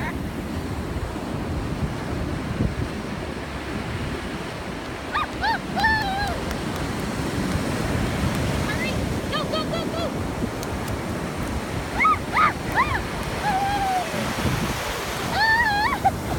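Ocean surf washing up on the beach in a steady rush. Several short, high-pitched cries come over it from about five seconds in, the loudest near the end.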